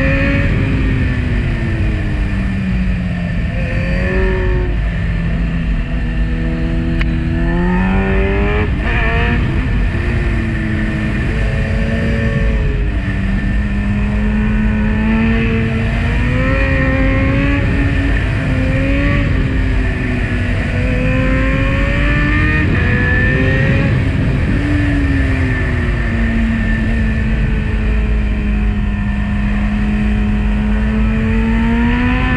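Kawasaki Z900's inline-four engine through a full Akrapovic exhaust, heard on board while riding. The revs climb and drop again and again with throttle and gear changes, with a quick run of short rev rises about eight to nine seconds in. A steady wind rush sits beneath it.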